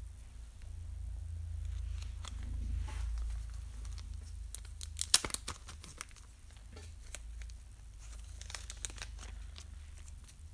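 Thin plastic card sleeve crinkling, with light clicks and taps as a sleeved trading card is handled and set down on a small display easel. A quick cluster of sharp clicks comes about five seconds in, over a low steady hum.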